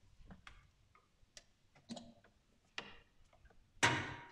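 Irregular, scattered clicks and knocks, with a louder knock that rings on briefly near the end.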